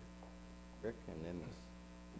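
Steady electrical mains hum in the recording, with a faint voice murmuring briefly about a second in.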